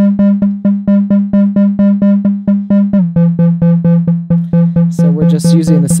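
Instruo CS-L complex oscillator's multiply output, its tone opened and closed by an envelope so that the circuit works as a VCA: one pitched synth tone cut into short plucked notes, about four a second. The pitch steps down about three seconds in, and near the end the tone brightens and its timbre bends.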